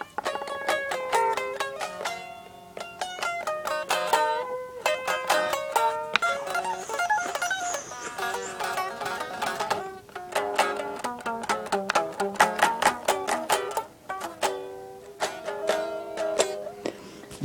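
A plucked string instrument played solo: a quick improvised melody of picked single notes and chords, broken by short pauses between phrases.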